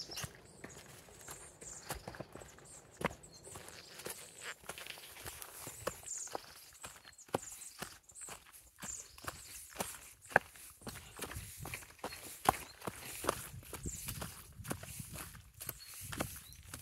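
Footsteps on a stone path covered with dry fallen leaves: crunching, scuffing steps at an uneven walking pace, with sharp clicks of shoes on stone.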